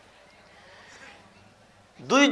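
Faint background room noise with a low steady hum, in a pause between a man's spoken sentences.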